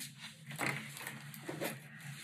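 Faint rustle of bulky yarn and wooden knitting needles as a knit stitch is worked, with a few soft small ticks.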